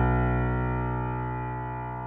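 Piano holding a chord over a low bass note, struck just before and left to ring, slowly dying away.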